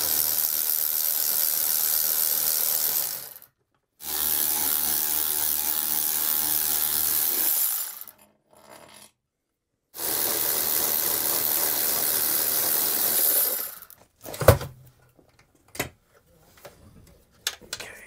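Cordless ratchet running in three bursts of about four seconds each, spinning out the 13 mm bolts that hold an RV air conditioner's ceiling plate. A single sharp thump and a few light knocks follow near the end.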